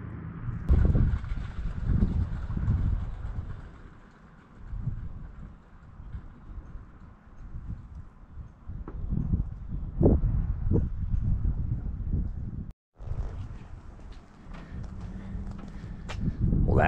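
Wind buffeting the microphone in uneven gusts of low rumble, with a few short knocks near the middle. The sound cuts out for an instant about three-quarters of the way through.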